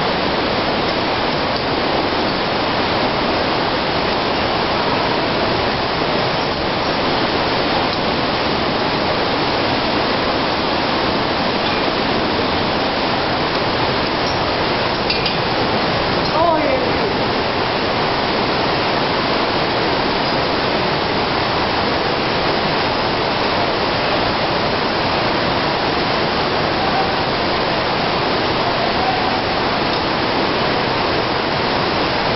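Steady, unbroken rush of falling water, like a waterfall close by, at an even loud level throughout.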